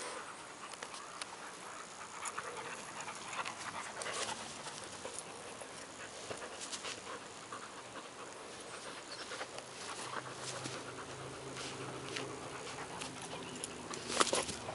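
Two dogs playing tug-of-war with a knotted rope toy: panting and irregular scuffling as they pull.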